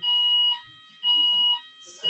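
Fire alarm sounding a loud, repeating electronic beep, two half-second shrill tones about a second apart, which those present take for a drill.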